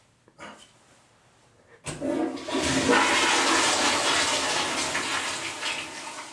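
A public-restroom toilet flushing: a sudden rush of water about two seconds in that holds steady for a few seconds and then tails off.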